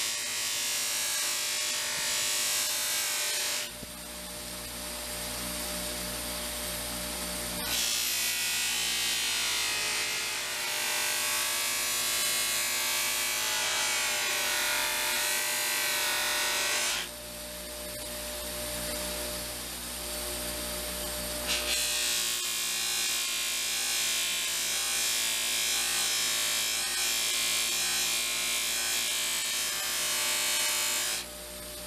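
Bench grinder running with an abrasive wheel while the multi-tool's handle is pressed against it, a steady rasping hiss over the motor's hum. Twice the hiss drops away abruptly for a few seconds, leaving a lower, duller grinding sound.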